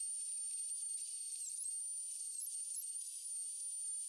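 A faint, thin, steady high-pitched tone over hiss, with no low sound under it. It starts and stops abruptly, like heavily filtered audio laid over a time-skip edit.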